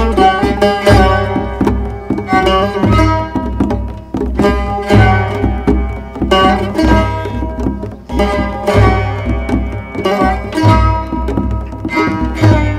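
Instrumental Greek music with Eastern influences: plucked string instruments with a bright, banjo-like twang, as of the cümbüş and sitar, over hand drums in a steady pulse of deep strokes.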